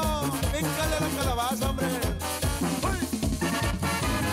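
Mexican banda music in quebradita style: clarinets and trumpets playing a wavering melody over a stepping bass line and a steady, driving drum beat.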